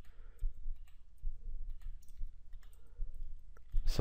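A few computer mouse clicks over a low background hum, with the clearest clicks near the end.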